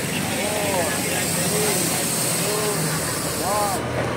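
A voice calling out a start countdown, one drawn-out call about every second, over the steady hum of an idling vehicle engine.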